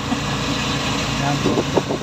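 Tricycle's motorcycle engine running steadily under way, with road noise from the wet street.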